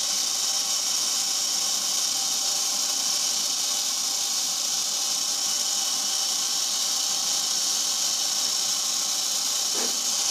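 Steady, high-pitched hiss from a pneumatic agarbatti (incense-stick) making machine, with a faint steady hum beneath it.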